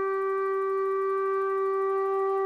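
A flute holding one long, steady note.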